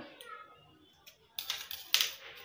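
Steel fabric scissors snipping a notch into the edge of cotton fabric: a quick run of sharp clicks in the second half, ending with a louder clack as the scissors are laid down on a tile floor.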